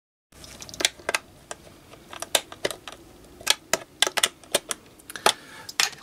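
Irregular sharp clicks and taps of a screwdriver and a plastic housing being handled while the terminal cover of a small digital thermostat unit is fitted and screwed down.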